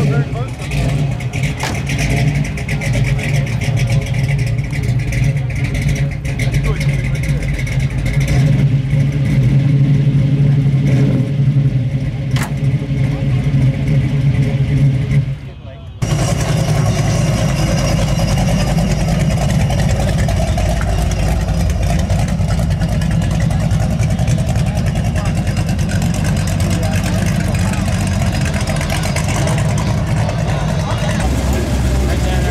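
Chevrolet Camaro engine idling steadily through its exhaust. About halfway through it cuts to another Camaro's engine rumbling as the car drives slowly past, with voices in the background.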